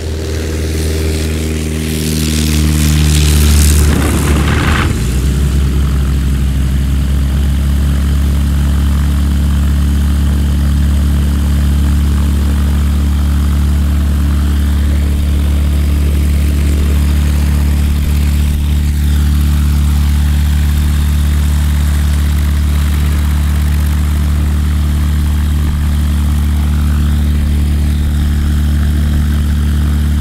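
Zenair 601 light aircraft's engine and propeller running on the ground just after start-up. A louder, rougher stretch with a shift in pitch in the first few seconds, then it settles into a steady idle.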